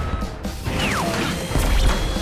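Anime action sound effects over music: a rushing crash of swirling dust, a falling whistle-like swoop about a second in, then a heavy low impact rumble near the end, the loudest part.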